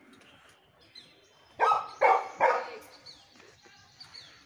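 A dog barking three times in quick succession, with faint bird chirps around it.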